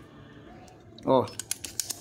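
A few quick, light clicks near the end from a metal spring-loaded desoldering pump being handled and set onto a solder joint on a circuit board.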